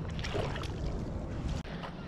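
Wind rumbling on the microphone, with a few faint knocks from handling as a landed striped bass is grabbed by the lip and lifted. The sound drops out for an instant near the end.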